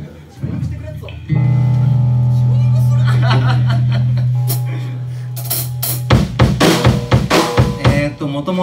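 A single low note from an amplified electric string instrument rings out about a second in and is held for a few seconds as it fades, a sound-check test note. From about six seconds in the drum kit is struck in quick, uneven hits on snare and kick.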